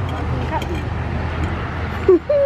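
A steady low mechanical hum, like an idling engine, runs evenly throughout. A single word is spoken about half a second in.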